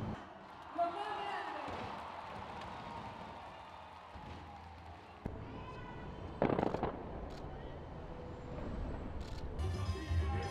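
Fireworks going off: a crackling haze with one loud bang about six and a half seconds in and a few sharp cracks after it, with voices in the background.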